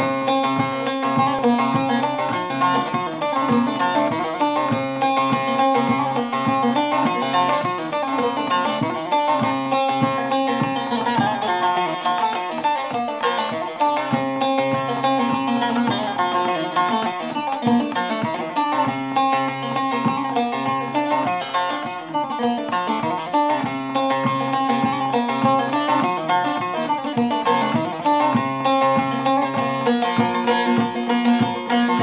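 Bağlama (saz), a long-necked Turkish lute, played solo: a Turkish folk melody picked in quick, continuous strokes over ringing drone strings.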